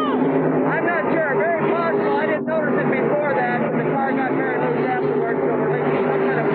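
A man talking indistinctly into an interview microphone over the steady drone of race car engines, with a brief dropout about two and a half seconds in.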